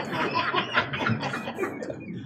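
Chuckling laughter.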